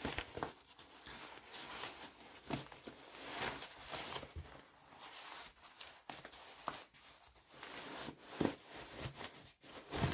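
Fabric of a sewn bag rustling and brushing in irregular soft bursts as it is pulled through its lining and turned right side out, with a few light taps and ticks.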